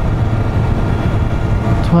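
Motorcycle engine holding a steady low hum at a constant cruise, mixed with wind and road noise as heard from on the moving bike.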